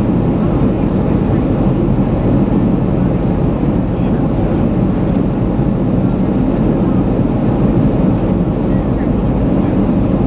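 Cabin noise of a Boeing 737 in flight, heard from a window seat beside the wing: the steady, low rumble of the turbofan engine and rushing airflow, unchanging throughout.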